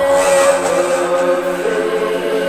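Deep electronic music: sustained synth chords, with a noise swell in the high end coming in at the start and fading after about a second.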